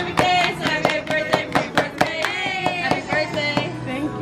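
A group of restaurant servers singing a birthday song together while clapping in time, about four claps a second. The clapping stops about halfway through while the singers hold a long, wavering note.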